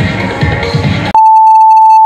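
Upbeat electronic workout music with a steady beat that cuts off about a second in, replaced by a loud, steady electronic interval-timer beep lasting about a second, marking the switch to the next timed interval.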